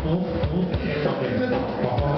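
Live band music: a drum kit keeping a beat under guitar and bass, with a voice possibly rapping over it.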